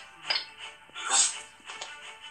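Background music from an animated children's story app, with short cartoon sound effects and a brief voice-like falling sound about a second in.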